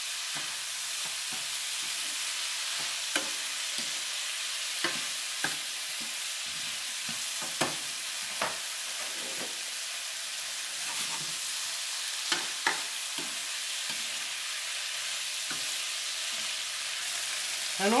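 Vegetables stir-frying in a skillet in oyster sauce: a steady sizzling hiss with a dozen or so scattered sharp pops and clicks.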